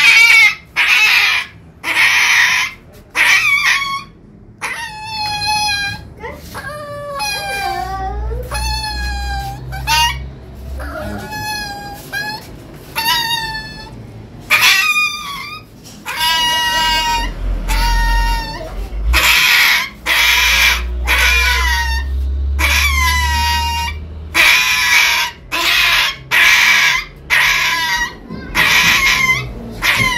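A puppy crying out over and over, about one high yelp a second, each call drawn out with a wavering, often falling pitch: the cries of a puppy in distress while held down for handling on a vet's table.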